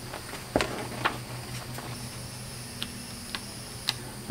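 A few light taps and clicks from a repair manual's pages being handled and shifted, the sharpest about half a second in, over a steady low hum.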